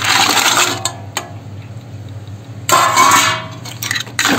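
Cleaned raw crabs tipped from a steel bowl into a steel pot of masala: their shells clatter and slide against the metal, with a second clatter and a brief metallic ring about three seconds in.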